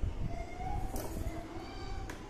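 Handling of a cardboard smartphone box after its lid has been slid off, with one light click about a second in, over a steady low background rumble.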